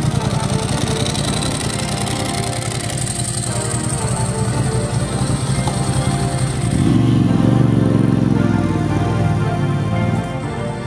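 Hard rock music over a Ducati motorcycle's air-cooled V-twin engine running. The engine grows louder and shifts in pitch from about seven seconds in, as the bike pulls away.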